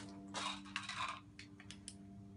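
Board game pieces being handled: a short rustle, then a few quick light clicks near the end, over a low steady hum.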